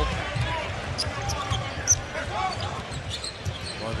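Live basketball game sound from the arena floor: a ball dribbling on the hardwood court over a steady crowd murmur, with short high sneaker squeaks scattered through.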